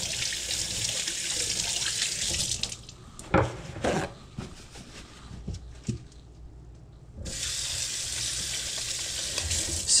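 Kitchen faucet running into a stainless-steel sink while hands are washed under it. The water stops about three seconds in, leaving a few knocks, then runs again about seven seconds in.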